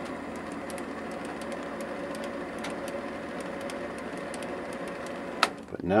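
MX210 mini lathe running steadily, spinning a six-jaw chuck, a steady hum with a faint rapid ticking. It stops with a click near the end.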